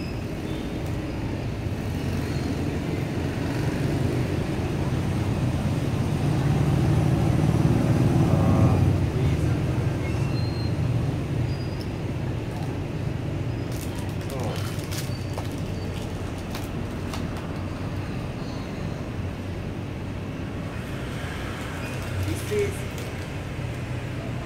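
Road traffic: a low vehicle rumble that builds to its loudest about eight seconds in, then fades back to a steady background drone. A few light clicks come in the middle.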